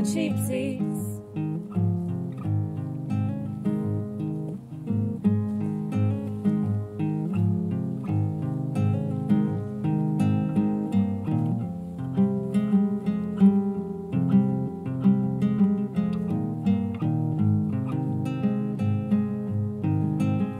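Acoustic guitar played alone, plucked notes in a steady, even pattern.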